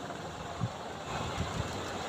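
Low, steady background rumble with two soft, low thumps, about half a second and a second and a half in.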